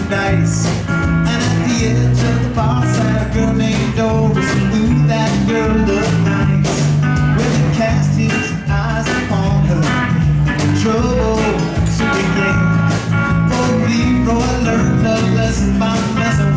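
Live band playing an instrumental stretch of a rock-and-roll number: electric guitar, bass guitar, acoustic guitar and drums over a steady beat.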